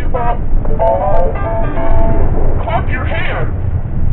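Fisher-Price activity walker's electronic toy piano keys sounding synthesized notes as they are pressed, with notes held for about a second and a half after the first second, then a snatch of the toy's recorded voice near the end.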